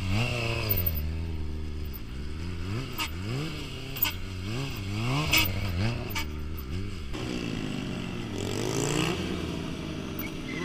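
Sport motorcycle engine revved up and down over and over, its pitch rising and falling about once a second as the rider works the throttle through a wheelie. A few sharp clacks come in the middle.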